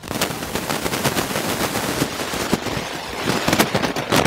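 Dense crackling and popping from a faulty audio recording: a rapid, unbroken run of sharp clicks that drowns out other sound.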